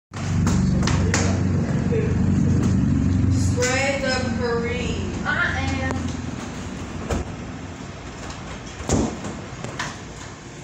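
A vehicle engine running with a low rumble, loud for the first few seconds and then fading away after about six seconds. Voices talk over it, and there is a single thump near the end.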